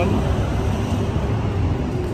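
Wind rumbling on the phone's microphone over the steady noise of road traffic.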